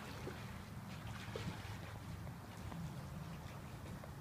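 A steady low hum like a small motor, with faint trickling water and a few light clicks.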